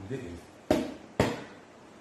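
Two sharp knocks about half a second apart: a hand rapping on the tabletop among the self-heating food boxes.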